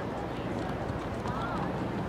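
Outdoor field ambience: faint, distant voices over a steady low background rumble.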